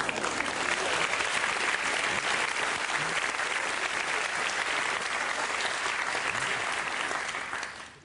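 Live audience applauding, a steady clapping that dies away just before the end.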